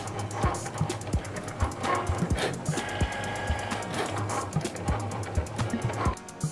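Cricut Maker 3 cutting machine cutting a vinyl stencil: its motors run with a steady low hum and shifting higher tones as the blade carriage moves. Background guitar-and-drum music plays over it.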